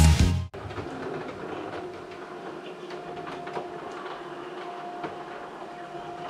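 Music stops abruptly half a second in, and a steady mechanical rattle with a faint hum follows: a window roller shutter being raised, its slats clattering as they roll up.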